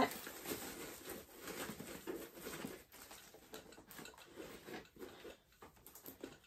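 Faint rustling and small ticks of shred filler being handled and tucked into the side of a plastic gift basket.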